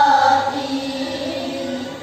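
A group of young girls singing together in unison in long held notes. The voices soften about halfway through and dip briefly at the end.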